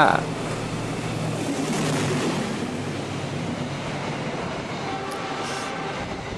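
The Argo Wilis express train, hauled by a diesel-electric locomotive, passing close by at speed: a steady rushing of wheels on rail over the low hum of the engine. The rush swells about two seconds in as the train draws level.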